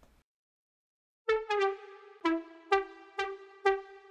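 Serum software synthesizer lead sounding about six short, bright notes at nearly the same pitch, starting about a second in, as a simple riff is entered in the piano roll.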